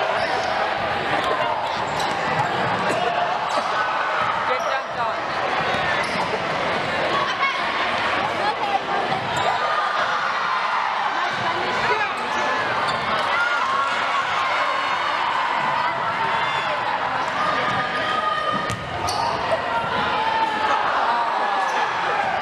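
Basketball bouncing on a hardwood gym floor during a game, over steady chatter of many voices.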